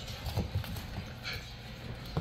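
Bullmastiff puppy's paws tapping on a hard laminate floor, with a few light knocks in the first half second or so.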